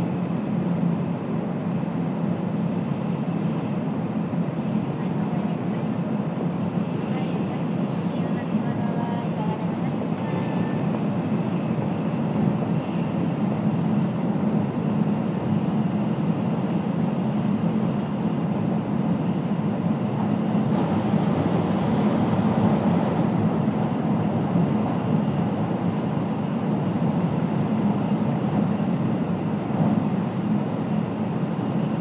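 Running noise inside the passenger cabin of an N700A Shinkansen car travelling along the line: a steady low rumble and rush, with a few faint brief tones about eight to ten seconds in.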